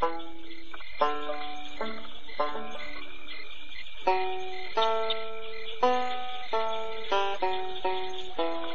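Banjo picking a slow, easy-going tune, note by note, over a steady high chirring of bayou crickets and frogs.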